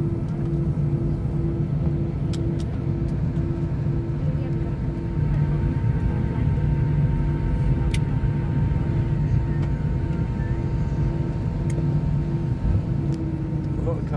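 Steady low rumble inside an Airbus A319 cabin on the apron after landing, from the idling engines, with a pulsing hum over it. Near the end the hum starts to fall in pitch.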